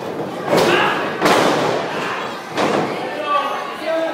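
Wrestlers' bodies slamming onto a wrestling ring mat: a couple of heavy thuds within the first second and a half, then a lighter one, over crowd chatter.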